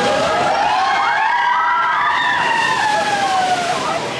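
Several voices giving long cries that rise and then fall back in pitch, overlapping one another, from riders in a dark ride boat.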